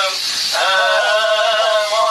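Male voice singing a Turkish folk song (türkü). After a short break near the start, it holds one long note with a wavering pitch.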